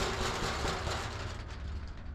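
Corrugated steel roller shutter rattling as a gloved hand shakes it: a sudden clatter that fades over about a second and a half, over a low steady rumble.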